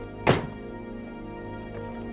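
A single thunk about a third of a second in as a red cloth-covered box is set down on a table, over steady background music.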